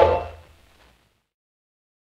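The final note of a 1939 Polish dance-orchestra foxtrot, played from an Odeon 78 rpm record, fades out within about half a second, and the recording ends in silence.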